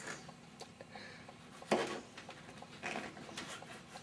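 Kitchen knives tapping and clicking on plastic cutting boards as bell peppers are sliced: scattered light clicks, with one louder short sound a little before two seconds in.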